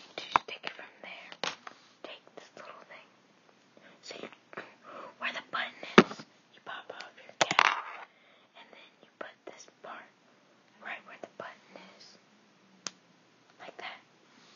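Soft whispering over clicks and rustles of packaging and small white plastic items being handled close to the microphone, with two louder clicks near the middle.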